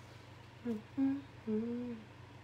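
A woman humming a tune with closed lips: three short notes starting about a third of the way in, the last held longest and rising slightly in pitch.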